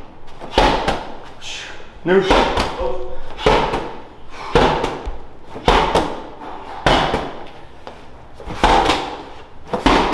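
Medicine ball thrown hard against a brick wall in rotational lateral throws, slamming into it about once a second.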